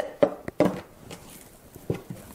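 Wet, sticky teff sourdough dough being stretched and folded by wet hands in a plastic tub: a few short squelches and slaps, three in the first second and one more near the end.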